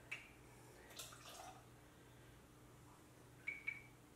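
Faint pouring of gin from a bottle into a small jigger, with a few light clicks, and two quick ringing clinks of glass near the end.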